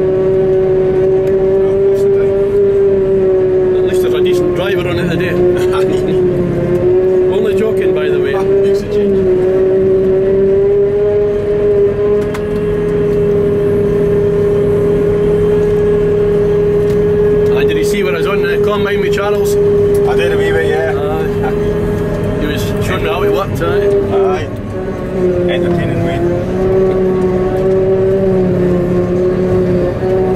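Claas Jaguar 950 forage harvester running and chopping grass, heard from inside its cab: a steady high-pitched whine with overtones that dips slightly in pitch twice.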